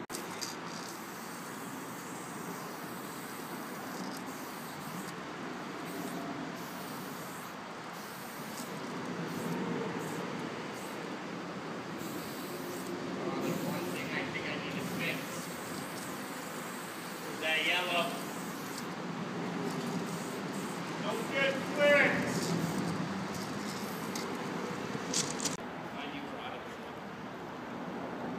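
Steady outdoor background noise like distant traffic, with two short voice-like calls about two-thirds of the way through.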